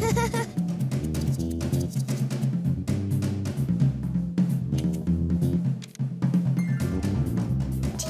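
Upbeat instrumental music led by a drum kit playing a busy beat, with a bass line underneath.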